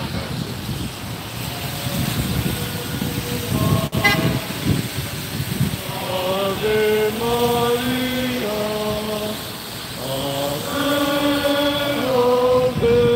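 A car's tyres hiss past on a wet street. From about halfway, a group of voices sings a slow hymn in long held notes, stepping from note to note.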